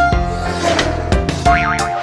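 Playful background music with a sweeping whoosh effect near the start and a short warbling, wobbling pitch effect in the second half.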